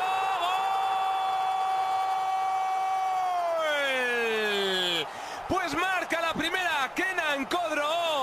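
Spanish football commentator's long goal cry, one shouted note held for about five seconds that slides down in pitch as it ends, announcing a goal just scored. Fast, excited commentary follows.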